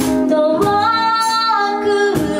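A woman singing a held, stepping-up melody over strummed acoustic guitar in a live acoustic duo performance.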